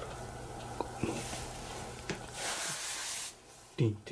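Hushed whispering and breathy hiss over a steady low hum, with a couple of faint clicks; no clear bell tone stands out.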